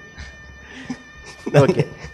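A man laughing into a microphone: soft at first, then a short loud burst of voice about a second and a half in.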